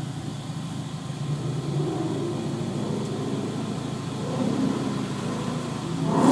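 Ford Mustang 5.0 V8 engine revving during donuts, heard muffled from inside a nearby car, the revs climbing near the end.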